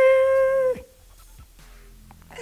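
A woman's voice holding one long, steady note for a little under a second as she laughs. It ends abruptly and leaves only faint sound.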